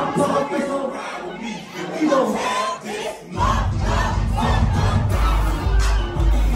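A crowd shouting and yelling together; a little past halfway, the deep bass of loud music comes in beneath the shouting.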